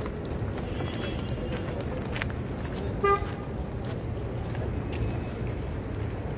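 A single short car horn toot about three seconds in, over a steady low rumble of street traffic.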